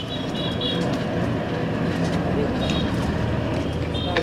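City street traffic heard from a moving vehicle: a steady rumble and hiss of engines and tyres. Short high beeps sound three times in the first second and once more about two-thirds through.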